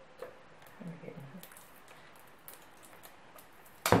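Faint clicks and rustles of a small packet being handled and opened, with a brief hum about a second in, then one sharp knock near the end.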